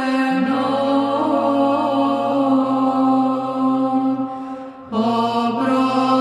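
Orthodox Byzantine chant sung by men's voices: a moving melody over a steady, held low drone (the ison). The singing breaks off briefly for breath about four seconds in, then resumes.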